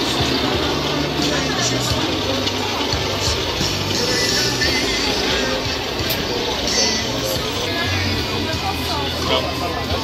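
Busy street-market ambience: background crowd chatter with music playing and a steady low rumble.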